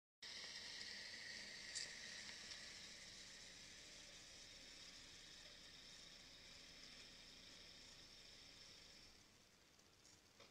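Near silence: a faint, steady hiss that slowly fades away.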